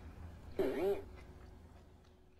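A short voice-like call that rises and falls in pitch, lasting about half a second, over a faint steady hum.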